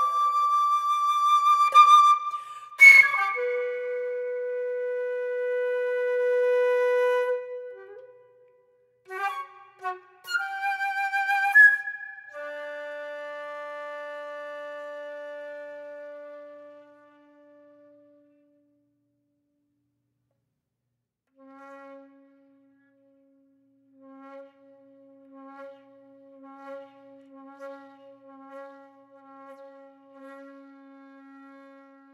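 Solo flute playing slow, sparse phrases: a high held note broken by a sharp accented attack, then a long low note that swells, a few quick notes with an upward slide, and a low note fading into about three seconds of silence. Near the end a quiet, breathy low note pulses unevenly.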